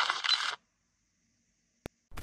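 The Cardputer's small built-in speaker plays the noisy tail of its custom boot.wav sound during start-up: a hiss with no bass that cuts off suddenly about half a second in. It is followed by silence and a single sharp click near the end.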